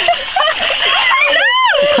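Women laughing and exclaiming, with a high squeal that rises and falls about halfway through, over water splashing as they wade in a stream.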